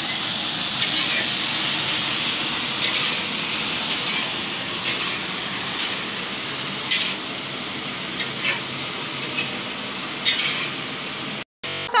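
Vegetables frying in a large wok over a gas burner: a steady sizzle, with a long metal ladle scraping the pan about once a second as it stirs. The sound cuts off suddenly near the end.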